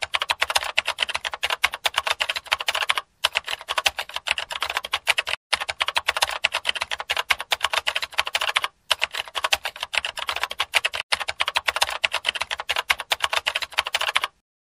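Typing sound effect: rapid, continuous keystroke clicks broken by four short pauses, set to on-screen text being typed out.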